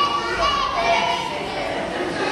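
A group of young children's voices singing together, with some held notes.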